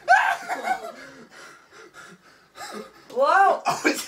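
Young men laughing and crying out, with breathy gasps and snickers in the quieter stretch between; one loud drawn-out exclamation comes about three seconds in.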